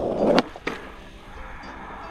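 Skateboard wheels rolling on rough asphalt, then a sharp clack as the tail is popped down against the ground and a second knock as the board comes up and is caught by hand. The rolling then stops.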